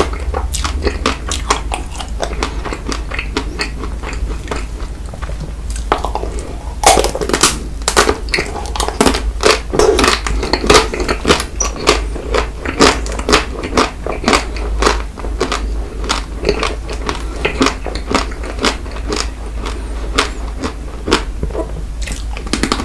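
Close-miked biting and chewing of frozen ice cream bars: a dense run of sharp, clicky bites and wet mouth sounds, busier and louder from about seven seconds in.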